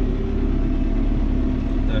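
John Deere tractor engine running steadily at low revs under load, heard from inside the cab as a constant low hum.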